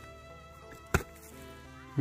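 A hand hoe chopping once into dry soil about a second in, a single sharp thud.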